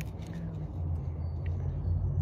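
A steady low engine hum, with a few faint taps as a cigarette is stubbed out.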